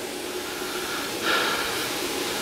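Steady hiss of background noise with a faint steady tone, swelling a little louder for the last second or so.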